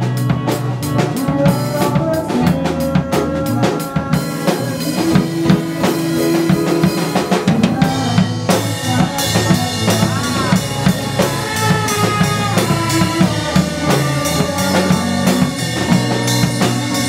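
A small band of electronic keyboard, electric guitar and drum kit playing an upbeat song, with the drums prominent and a steady beat.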